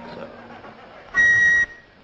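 A small end-blown wooden pipe sounds one loud, shrill high note, held steady for about half a second a little past a second in, after faint room noise.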